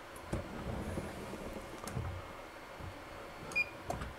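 Faint knocks and rustling as a swing-away heat press's upper platen is swung over the mat and lowered to start a press, with a short high beep near the end.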